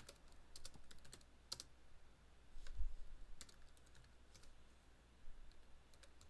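Typing on a computer keyboard: irregular keystrokes in short runs, with a dull thump about three seconds in.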